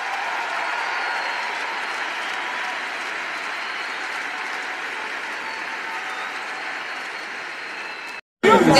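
Large audience in an arena applauding: a dense, steady wash of many people clapping that builds over the first second and then holds.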